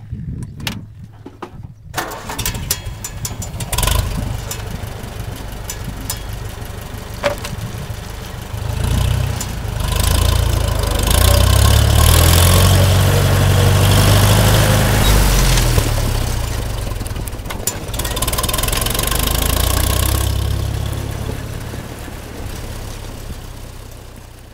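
Farmall Super M four-cylinder engine cranking and starting about two seconds in, then running. It rises to full revs, dips briefly as the throttle is closed and the clutch pressed for the shift from fourth to road gear (fifth), rises again in the new gear, then eases off near the end.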